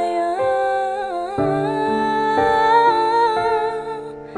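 Female singer's voice, live, singing a short phrase that settles into one long held note about a second and a half in, over piano chords that change about once a second.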